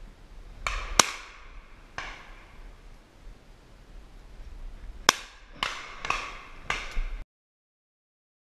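Shotgun shots fired at birds overhead, about eight in all: a couple spread over the first two seconds, then a quick run of five after a pause. Two of them are much louder than the rest. The sound cuts off suddenly near the end.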